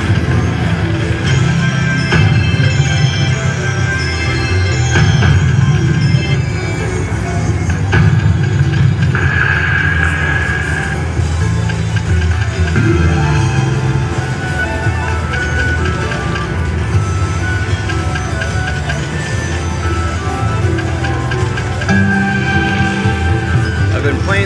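Ainsworth Ultimate Fortune Firestorm slot machine playing its electronic reel-spin tunes and chimes over several spins in a row, ending on a paying win.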